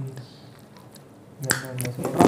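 A single sharp click about one and a half seconds in, with a couple of fainter clicks after it and a short hummed voice sound over them. Before that it is quiet.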